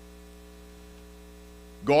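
Low, steady electrical mains hum, with a man's voice starting near the end.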